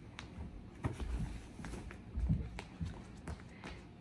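A child's sneakers on a bare concrete floor: irregular scuffs and light thumps as she steps into oversized shorts, then quick running footsteps.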